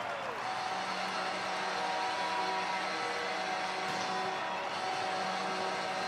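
Ice hockey arena sound: a steady din of the crowd with several long, steady held tones over it.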